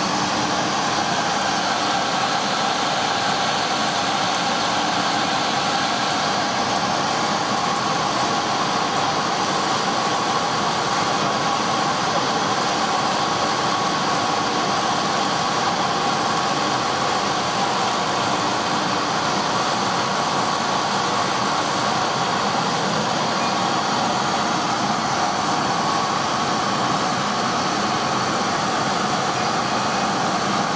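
JQ9060 laser cutting machine running steadily during its pen-marking pass: an even mechanical hum with a few faint steady whining tones.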